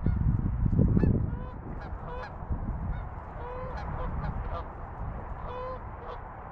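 Canada geese honking, a string of short repeated honks from about a second in until near the end. A loud low rumble fills the first second.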